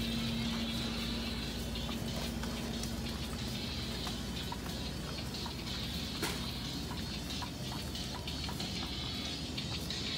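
Supermarket aisle ambience: a steady background hum with faint music and scattered light clicks. A low steady tone fades out about three seconds in.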